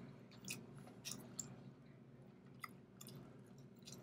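Faint chewing of a bite of oven-baked breaded chicken fillet, with a few soft, scattered crunchy clicks from the breading.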